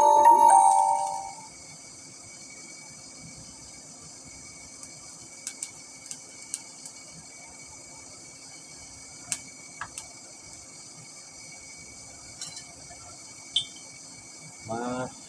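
A brief chime of a few ringing notes in the first second and a half, then the steady low hum of the forge's fan under a faint high hiss, with a few scattered sharp clicks.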